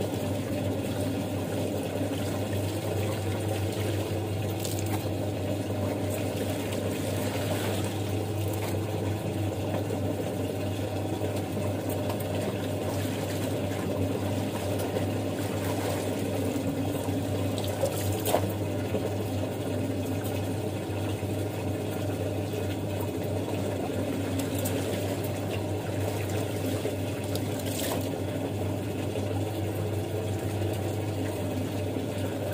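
Wet clothes being lifted, squeezed and dunked in a plastic tub of rinse water, with water splashing and streaming off them and a tap running into a second tub. Under it runs a steady low motor hum.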